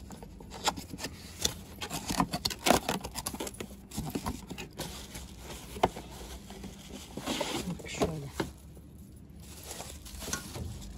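A cardboard cookware box being opened by hand and a pot wrapped in a plastic bag slid out of it: cardboard flaps scraping, irregular knocks, and plastic crinkling.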